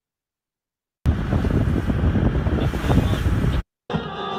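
A second of silence, then a loud, rushing, wind-like noise from a video clip's soundtrack for about two and a half seconds, heaviest in the low end. It cuts off suddenly, and music starts just before the end.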